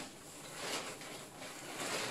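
Soft rustling of a bag and fabric as a garment is pulled out of a bag by hands in disposable plastic gloves.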